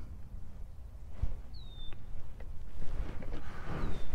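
A bird's short whistled call that slides down in pitch and then holds, about one and a half seconds in, with a fainter similar call near the end, over a low outdoor rumble and a soft low thump about a second in.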